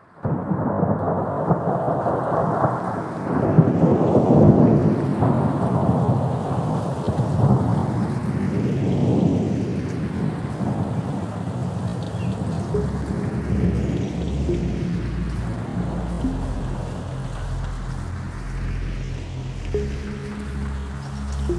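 Thunderstorm soundtrack: steady heavy rain with rolling thunder, loudest in the first few seconds and slowly easing. Low music notes come in a little past the middle.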